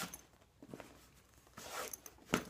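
Faint rustling and scraping of plastic golf discs being handled and slid against the disc golf bag, in a few short brushes, the loudest about one and a half seconds in.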